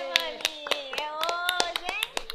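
A small group of people clapping and cheering, the claps quick and irregular under long, drawn-out cheering calls.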